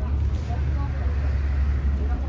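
A steady low rumble, with faint voices in the background.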